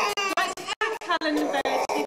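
Speech only: several people talking over one another.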